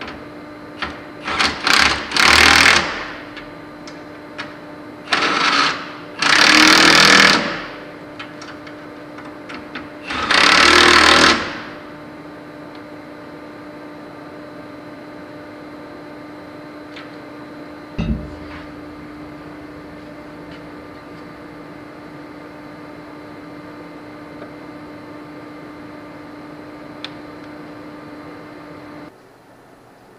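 Cordless impact driver hammering in four short bursts over the first dozen seconds, driving the bolts that hold a wear-skirt strip on a sand truck's conveyor. A steady low hum runs underneath and cuts off near the end, with a single knock about 18 seconds in.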